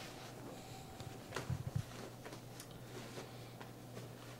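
Soft handling noise as a pressure-mapping mat is laid over a wheelchair air cushion: a few faint clicks and a short run of soft low thuds about a second and a half in, over a steady low hum.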